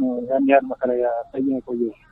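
Speech only: a man talking, with short pauses between phrases.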